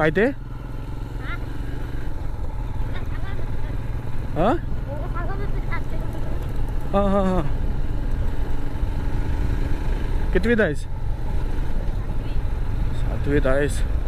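Motorcycle engine running steadily at low revs while the bike rides along a rough road, with a few short spoken phrases over it.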